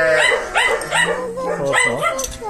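Chained farm dog barking in a quick series of about five short barks.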